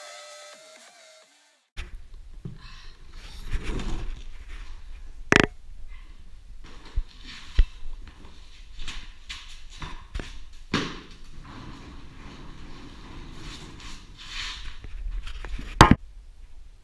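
Music fades out in the first second. From about two seconds in come scuffling, footsteps and rustling, broken by scattered sharp knocks and thuds, the loudest a little after five seconds and again just before the end.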